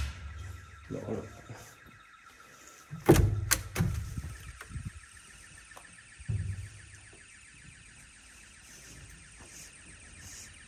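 Intruder alarm of an abandoned building sounding faintly in the background as a steady, rapidly pulsing high tone, set off by the explorers. A sharp knock about three seconds in is the loudest sound, with a few softer thumps after it.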